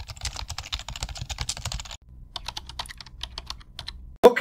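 Rapid typing on a computer keyboard: a fast, continuous clatter of key clicks, in two stretches with a brief break about halfway through.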